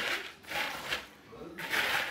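Spoon stirring cereal coated in melted chocolate and peanut butter in a plastic mixing bowl: a few short rustling, scraping strokes.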